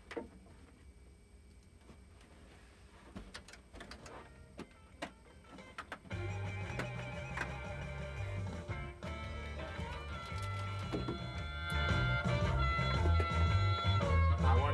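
A few light clicks and handling noises, then about six seconds in a recorded blues song starts abruptly, with bass and electric guitar, and plays on, growing louder near the end.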